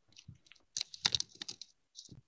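Faint computer keyboard and mouse clicks: a quick run of keystrokes, thickest about a second in, then a single click near the end.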